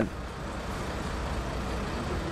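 Steady street noise with the low hum of vehicle engines running, from emergency vehicles (fire engines and ambulances) standing in the street.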